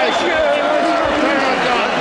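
Loud crowd of many voices shouting and cheering at once, filling the arena.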